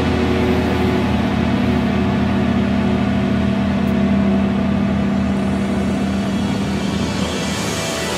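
A final chord on distorted electric guitars held and ringing out as one steady drone, slowly fading near the end.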